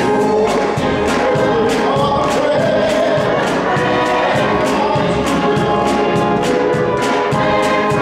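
Gospel choir singing with organ accompaniment, the singers clapping their hands in a steady rhythm on the beat, about two to three claps a second.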